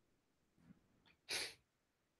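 Near silence, broken about one and a third seconds in by a single short, sharp breath sound from a person.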